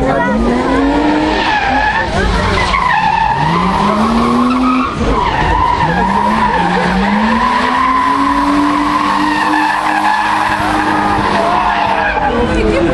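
Drift car sliding with its tyres squealing in a long, steady screech while the engine revs up in repeated rising pulls, the longest near the end.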